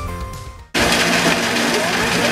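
Electric guitar through an amplifier, its last held note fading away. About three-quarters of a second in, a sudden cut to an ice-shaving machine running, a loud, steady, noisy grind as it shaves ice into a cone.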